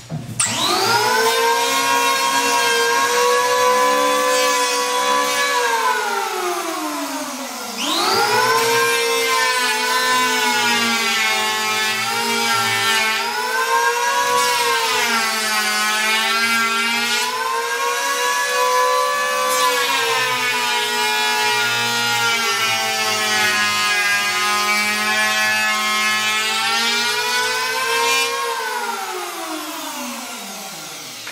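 Makita electric hand planer running as it shaves the jigsaw-cut edge of a board, its motor whine dipping slightly in pitch under load. The motor winds down after about six seconds and is restarted at about eight seconds. After a long second pass it spins down near the end.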